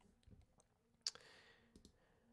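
Near silence: quiet room tone with a few faint, short clicks, the clearest about a second in.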